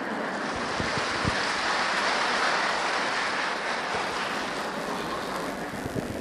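Audience applauding: an even rush of clapping that swells and then fades away over several seconds.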